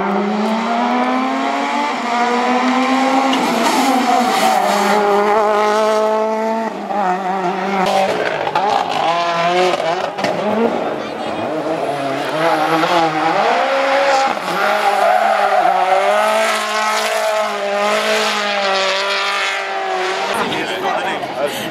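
World Rally Cars with turbocharged 1.6-litre four-cylinder engines driven flat out through a tarmac stage, starting with a Ford Fiesta RS WRC. The engine note climbs through each gear and drops at every upshift, over and over as cars come through in turn.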